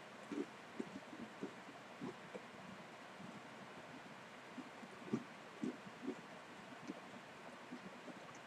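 Faint chewing of a whole Hydrox chocolate sandwich cookie with the mouth closed: soft, irregular crunches and mouth sounds.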